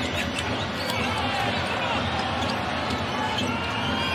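Live basketball game sound: a ball bouncing on the hardwood floor and sneakers squeaking, over steady arena crowd noise.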